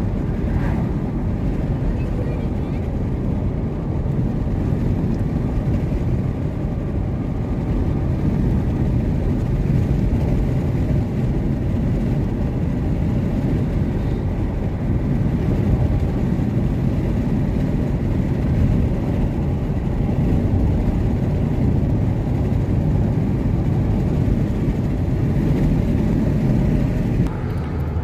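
Wind buffeting and road noise in a moving car with its windows rolled down: a loud, steady low rush. It eases slightly near the end.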